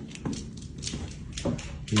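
A dog's claws clicking on a hardwood floor as she walks, a string of short, sharp taps a few tenths of a second apart.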